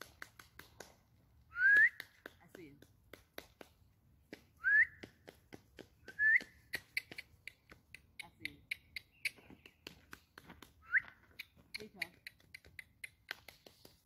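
Four short upward-sliding whistles, each rising to a high note, over a steady run of light crunching clicks of feet on gravel.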